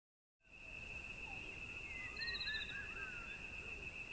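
Faint wild-country ambience that starts about half a second in: a steady high-pitched insect drone with a few short bird calls and a quick bird trill about two seconds in.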